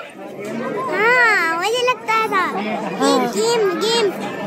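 Children's voices: a child talking and calling out in a high, sing-song pitch, with other voices around.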